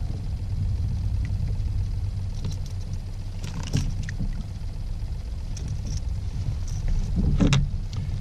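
Steady low rumble picked up by a kayak-mounted camera. Brief knocks and rustles come about three and a half and seven and a half seconds in, as a small ladyfish is handled on the line, the second louder.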